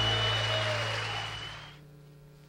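Audience applauding after a song, with a thin steady high tone over the clapping; the applause dies away near the end.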